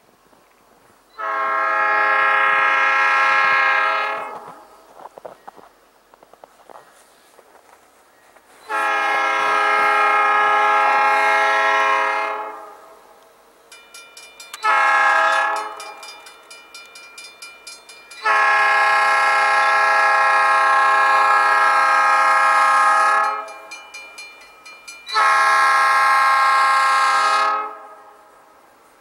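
Locomotive's Nathan P3 air horn sounding a grade-crossing signal in five blasts: long, long, short, long, long. The last two long blasts are separated by a short gap, and a crossing bell can be heard ringing between blasts in the second half.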